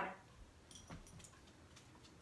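Faint clicks with a soft thump about a second in: a dog jumping down from an armchair and its claws ticking on a hardwood floor.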